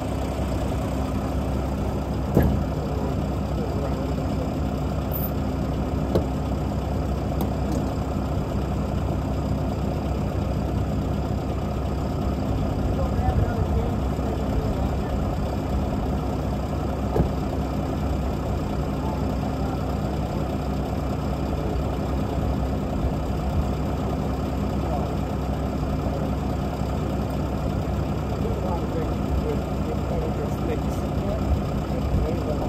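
Semi truck's diesel engine idling steadily, with a few brief knocks over it.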